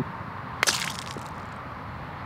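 Golf club striking a golf ball on a short approach shot from the fairway: a single sharp click a little over half a second in.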